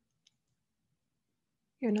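Near silence, broken by one faint, brief click about a quarter second in; a woman starts speaking near the end.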